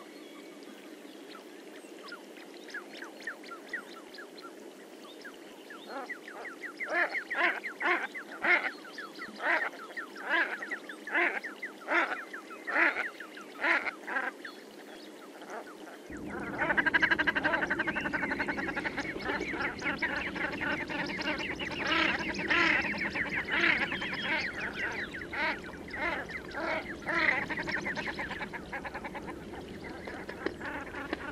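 Common shelduck calls: a series of repeated calls, a little over one a second. Then, about halfway through, a louder and busier stretch of many calls overlapping over a steady background noise.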